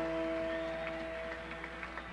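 A single guitar note with strong overtones, plucked just before and left to ring, slowly fading, with a few faint string or pick ticks. It is unaccompanied noodling or tuning on stage while the music is stopped.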